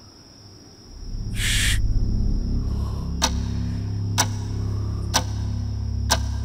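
Film soundtrack: a low, sustained musical drone swells in about a second in, with a brief hiss just after. From about three seconds in, clock-like ticks fall evenly about once a second, a countdown of tension as the deadline nears.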